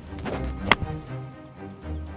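Golf iron striking the ball: one sharp strike less than a second in, just after a brief swish of the downswing, over steady background music.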